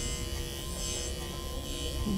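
Corded electric pet clipper with a metal universal comb attachment over a 30 blade, running at a steady buzz as it is pushed through a Bichon Frisé's thick coat.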